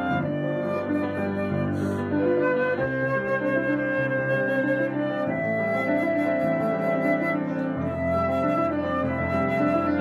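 Concert flute playing long, held melodic notes over a piano accompaniment.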